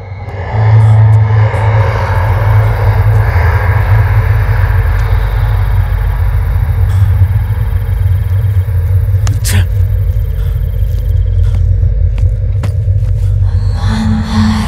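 Horror-film sound design: a loud, steady low rumbling drone that swells up within the first second and holds. A single sharp high hit cuts through it about nine and a half seconds in, and a few faint clicks follow near the end.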